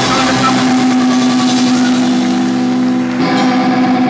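Distorted electric guitars through amplifiers holding a loud, steady ringing chord as a live rock song closes; the sound changes and thins out about three seconds in.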